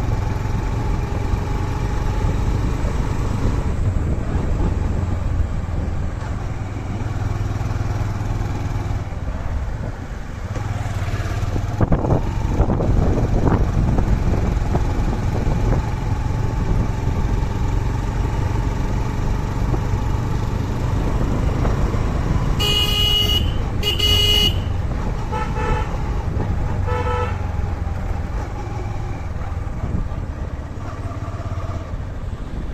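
Motorcycle engine running steadily while riding, with road and wind noise, the engine note easing off and picking up again about a third of the way in. Near the end a vehicle horn beeps twice, about a second and a half apart, followed by two fainter beeps.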